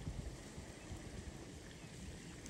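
Quiet outdoor background: a faint, uneven low rumble with a light hiss, and no distinct event.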